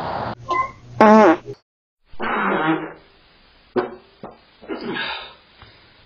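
Human farts, about five short ones separated by pauses. The loudest is a wavering, pitched one about a second in, a longer one follows after two seconds, and shorter ones come near the end.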